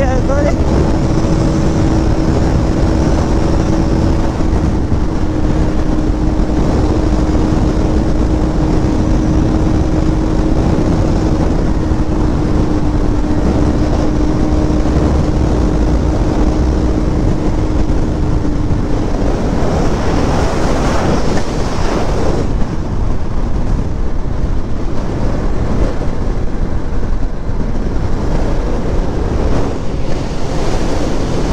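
Wind rushing over the action camera's microphone as a Bajaj Pulsar NS200 runs at highway speed, around 140 km/h. Under the wind is a steady, even drone from its single-cylinder engine that fades out a little past the middle, leaving mostly wind noise.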